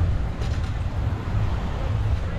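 Wind buffeting the microphone: a steady, unevenly fluttering low rumble over a faint hiss of open-air background.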